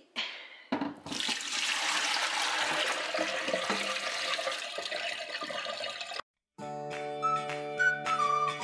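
Kitchen tap running full into a stainless steel sink, a steady splashing rush that starts about a second in and cuts off abruptly after about five seconds. Background music follows near the end.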